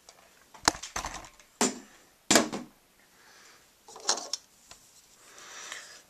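Small plastic toy switches being handled, giving a series of short, irregular clicks and knocks of hard plastic.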